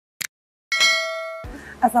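Subscribe-button animation sound effect: a short click, then a bright metallic chime that rings for under a second and cuts off abruptly.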